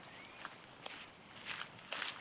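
Soft footsteps: a few faint scuffs on pavement.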